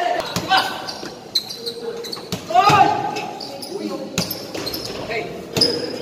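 A basketball bouncing on the court floor several times at irregular intervals, with a player's shout about halfway through, in a large echoing hall.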